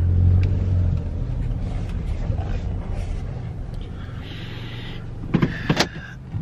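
Car engine and tyre noise heard from inside the cabin as the car rolls into a parking space. A low rumble is strongest at first and dies down over the first second or so, leaving a quieter steady hum.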